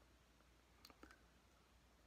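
Near silence: room tone, with two faint clicks close together about a second in.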